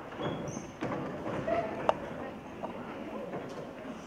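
Scattered footsteps and small knocks of people walking up onto a stage, over a low murmur in a large hall, with one sharp click just before two seconds in.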